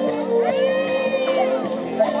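Live music led by a wooden flute playing a long held note over amplified backing music. The note steps down slightly about half a second in. Around the middle there is a brief high wailing glide that rises and falls.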